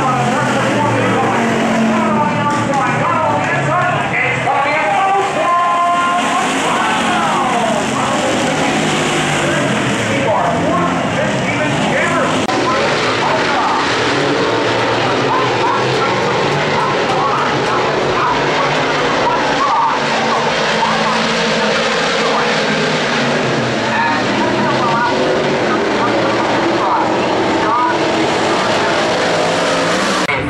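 Several dirt-track race cars, stock cars and modifieds, racing past together, their engines rising and falling in pitch as they rev through the turns.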